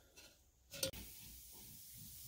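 A steel exhaust pipe knocks once against the muffler it is fitted into: a single short metallic clink a little under a second in, followed by faint handling noise.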